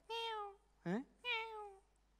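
Two meows, each about half a second and falling slightly in pitch, voiced by a man imitating a cat for a cat hand puppet, with a short questioning 'huh?' between them.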